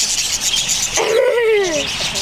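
A flock of budgerigars chattering continuously. About a second in, a voice glides down in pitch over the chatter for nearly a second.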